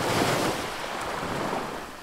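Ocean waves washing in, a surging rush of noise that starts suddenly and begins to fade toward the end.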